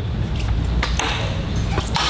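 Background chatter of several people in a large hall, with a few sharp clicks or taps about a second in and near the end.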